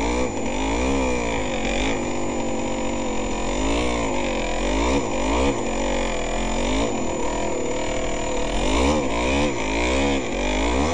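Yamaha DT200R two-stroke single-cylinder engine running under load, its revs rising and falling again and again, roughly once a second or two, as the throttle is worked.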